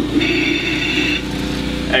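Steady running hum of the generator and pump engines. A high steady tone is heard for about a second near the start.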